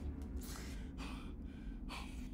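A man breathing hard in shaky, gasping breaths, about three in two seconds, over a low steady rumble.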